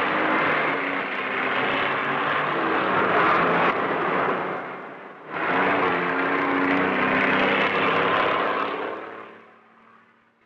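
Loud engine noise in two long stretches, the second starting suddenly about five seconds in, fading out near the end.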